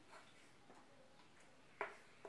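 Near silence, with a single short click near the end.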